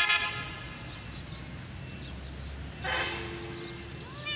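A vehicle horn tooting briefly twice, once right at the start and again about three seconds in, over a steady low background rumble.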